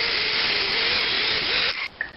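Cutoff wheel cutting through a screw clamped in a vise: a steady grinding hiss with a motor whine that wavers under load, stopping just before the end.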